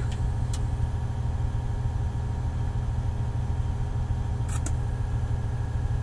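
Caterpillar 980M wheel loader's diesel engine idling steadily, a low even rumble heard inside the cab, with a couple of brief clicks.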